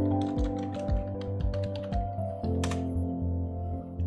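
Computer keyboard typing a short word, a run of quick keystrokes over the first two seconds, then one sharper click a little later, over background music with a steady bass pulse.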